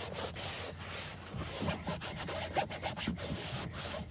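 Microfibre cloth rubbing over a car's textured interior door panel in a run of short, uneven wiping strokes, wiping off sprayed-on cleaning foam.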